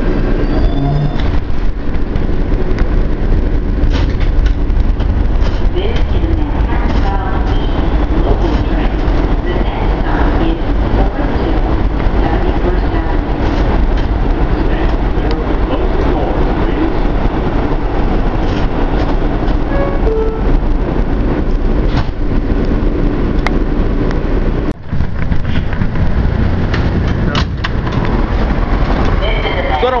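Loud, steady running noise inside an R160 subway car, with a deep rumble of the train on the rails, broken by a brief sharp drop about 25 s in.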